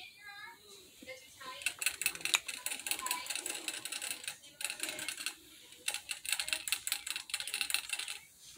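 A baby rabbit drinking from a cage water bottle, its licking at the metal sipper spout making rapid clicking. The clicking comes in runs broken by short pauses.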